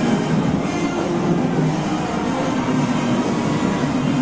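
Parade band music with sustained low brass notes, playing steadily.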